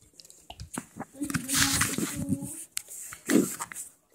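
Handling noise: a few light clicks and knocks close to the microphone, then a muffled voice mumbling for about a second and a half.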